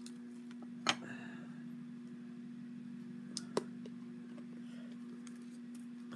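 A steady low hum, with two sharp clicks, one about a second in and one about three and a half seconds in.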